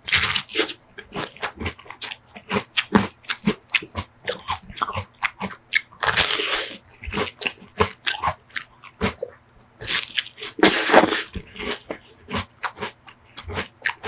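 Close-up crunching as a crisp sugar cone filled with vanilla ice cream is bitten and chewed. Quick crackly chews run throughout, with longer, louder bite crunches at the start, about six seconds in, and again around ten to eleven seconds in.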